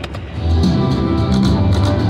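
IGT Golden Rose video slot machine playing its reel-spin music and sound effects, starting loud about half a second in, with quick ticking over the tune as the reels spin.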